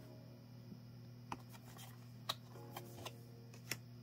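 Tarot cards being handled and laid down: about six light, sharp clicks and taps at irregular intervals, starting about a second in, over a steady low hum.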